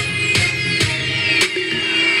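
Dance music with a steady beat of about two strokes a second, and a high electronic tone gliding slowly downward.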